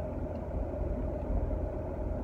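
Steady road and engine noise inside a moving car's cabin: a low rumble with a faint, even hum over it.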